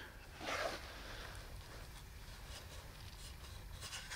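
Faint rubbing and rustling of fur against wood as a dead flying squirrel is handled and pushed against the entrance hole of a wooden box trap. A soft swell comes about half a second in.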